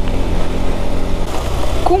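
KTM 390 Adventure's single-cylinder engine running at a steady speed while riding on gravel, under steady low wind rumble and road noise.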